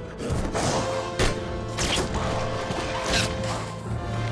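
Sword-fight sound effects over an orchestral film score: several sharp metal clashes and hits, with swishes of blades, spaced about a second apart against sustained orchestral chords.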